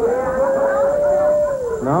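A long whoop or howl from the comedy-club audience, held on one pitch for about a second and a half and dropping away near the end, with other audience voices underneath, in answer to a comedian's question about bald men.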